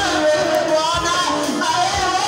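A woman singing a worship song into a microphone, her voice held and wavering on long notes, over instrumental backing with a low beat about once a second.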